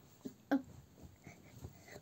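A child's brief vocal sound about half a second in, followed by faint handling and movement noise as she ducks and springs up.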